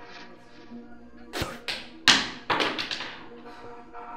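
A small red peg spat from the mouth, then knocking on a hard surface and bouncing a few times, the knocks coming closer together, over faint background music.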